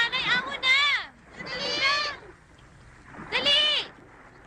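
High-pitched human voices calling out: a quick run of syllables, then two separate drawn-out calls that rise and fall, with short pauses between.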